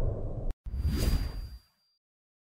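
Two whoosh transition sound effects. The first dies away and cuts off about half a second in, and the second swells and fades out by about a second and a half.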